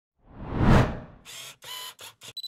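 Logo-intro sound effects: a swelling whoosh that rises and fades within the first second, then two short hissing swishes with a faint ringing tone in them.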